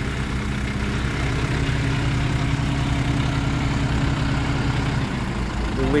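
Truck engine idling steadily while it runs a truck-mounted crane that lowers bonsai off the flatbed. A heavier low hum comes in about a second and a half in and drops away about five seconds in.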